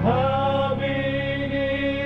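Southern gospel male quartet singing a long held chord in close harmony, cut off just before the end.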